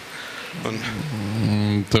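A man's low voice drawing out a long hum-like sound for about a second, getting louder, then breaking into speech. A low hall murmur comes before it.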